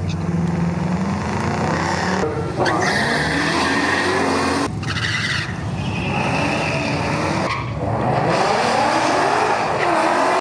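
Drag-racing cars launching off the line, their engines revving hard and climbing in pitch as they accelerate. The sound comes in four short runs, each cut off abruptly by the next.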